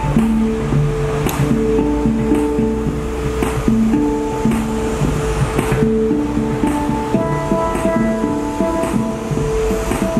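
Handpans played by hand: a continuous melodic run of short, ringing steel notes in a repeating pattern, with a low steady rumble underneath.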